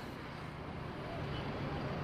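Steady street traffic noise from vehicles running on a busy road, an even low hum of engines and tyres.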